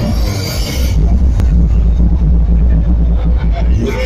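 Electronic dance music over the venue's sound system: a bright hissing sweep for the first second, then a loud, deep sustained bass drone with little else above it.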